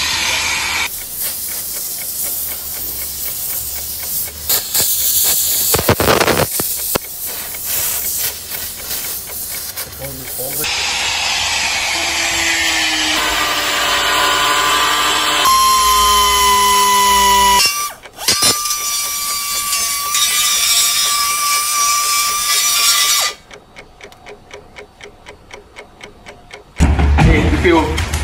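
Power tools working the car's front-end metal: a long hissing stretch of cutting, then a grinder running with a steady high whine that rises as it spins up. The last few seconds are quieter, with regular ticking.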